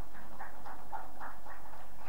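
A pause in the speech: a steady low hum with faint, indistinct crowd noise underneath.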